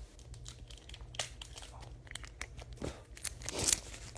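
Foil wrapper of a Pokémon Generations booster pack being torn open and crinkled, in scattered crackles that grow louder near the end.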